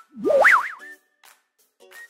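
Background music with a cartoon 'boing' effect: one quick springy glide that jumps up and down in pitch near the start, followed by a few short notes.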